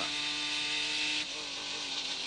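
Onboard sound of a Reynard-Dodge open-wheel race car's engine running at steady revs on a straight, with wind hiss on the camera microphone. A little past halfway the note and hiss drop as the driver comes off the throttle for the braking zone.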